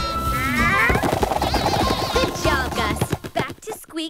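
Cartoon soundtrack of action music with sound effects layered over it. About a second in, a rapid run of sharp cracks or impacts sets in and thins out near the end.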